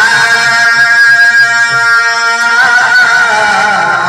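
Devotional bhajana singing: a man's voice holds one long note over a harmonium, then breaks into wavering ornamented turns about two and a half seconds in.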